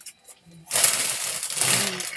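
Packaging rustling and crinkling as it is handled, starting suddenly about two-thirds of a second in.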